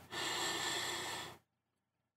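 A person taking one deep breath in, a breathy rush lasting just over a second.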